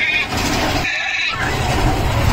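Big Thunder Mountain Railroad mine-train roller coaster running along its track, a loud rumbling ride noise with a brief lull about a second in.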